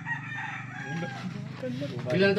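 A rooster crowing in the background, one drawn-out call in the first second or so, over a steady low hum and faint voices.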